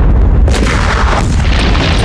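Battle explosions: a sudden loud blast about half a second in and another just after a second, over a continuous heavy low rumble.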